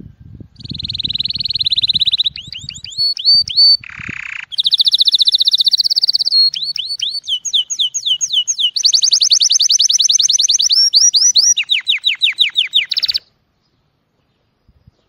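Male canary singing an excited courtship song: long rapid trills, runs of fast descending whistled notes and a short harsh buzz, stopping abruptly near the end.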